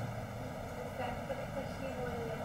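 A faint voice about a second in, heard over a steady hum of background noise on the line.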